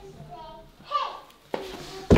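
A child's voice, faint and brief, followed by a short knock about one and a half seconds in.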